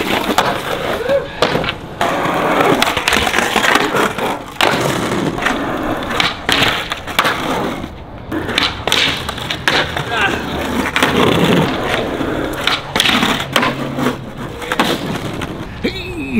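Skateboard wheels rolling on concrete, with repeated sharp clacks of the board popping and landing and the board sliding along a concrete ledge that has been smoothed with a rub brick.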